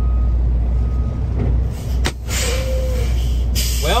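Truck's diesel engine idling steadily, heard from inside the cab, with two short bursts of hiss, one about halfway through and one near the end.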